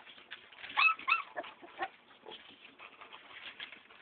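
A dog gives two short, high whines about a second in, over faint scattered clicks and taps.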